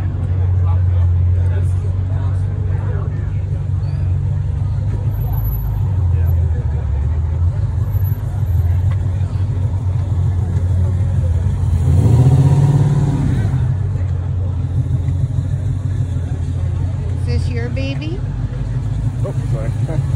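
Dodge Challenger SRT Demon's supercharged 6.2-litre Hemi V8 idling steadily, with one short rev about twelve seconds in.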